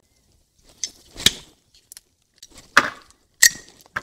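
Metal parts of an AR-15 bolt carrier group clicking and clinking as it is taken apart by hand: a few separate sharp clicks, the loudest about a second in.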